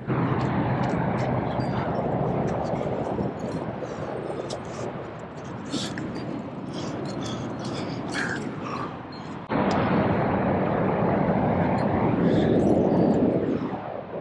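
Wind rushing over a body-mounted action camera's microphone as a steady noise that turns suddenly louder about two-thirds of the way through. A few faint clicks sound over it.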